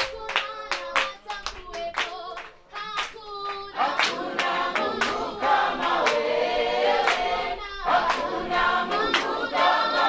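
Congregational worship singing with rhythmic hand clapping. One voice sings over steady clapping, then about four seconds in many voices join in together, unaccompanied by instruments.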